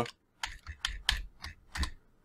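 Computer keyboard typing: about seven separate key clicks spread over two seconds, as a spreadsheet formula is keyed in.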